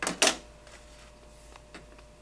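Two sharp clicks in quick succession right at the start, then quiet room tone with a low hum and a couple of faint ticks.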